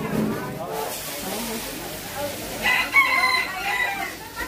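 A long, high-pitched call held steady for over a second, starting near the end, with faint voices in the first second.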